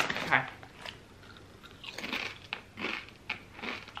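Doritos tortilla chips being bitten and chewed close to the microphone, a run of irregular crunches over the last two seconds or so.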